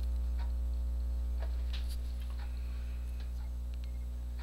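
A steady low electrical hum, with a few faint, irregular clicks and taps from hands rounding a ball of bread dough and setting it on a baking tray.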